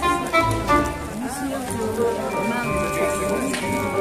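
Music with held, steady notes and a low bass pulse, over the voices of a market crowd.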